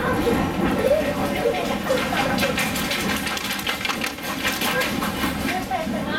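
Inside a moving vintage passenger coach: the train's running noise, and from about two seconds in a quick run of light taps and scrapes, tree branches brushing against the coach windows.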